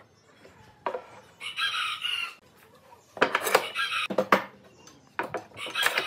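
Sharp wooden knocks and clatter as pine boards are handled and set down on a workbench. A rooster crows twice, about a second and a half in and again at the very end.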